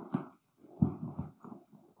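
Metal D-ring buckles and webbing straps being worked loose on a rolled canvas swag: a few short clicks and rustles, with a sharper knock a little under a second in.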